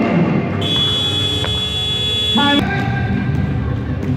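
A referee's whistle blown in one long, steady, high-pitched blast of about two seconds in a gym, cutting off sharply, over a murmur of voices.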